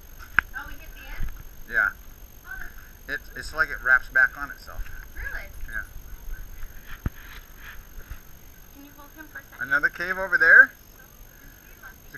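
Indistinct voices of people talking at a distance, in scattered short phrases, with a faint steady high-pitched tone underneath.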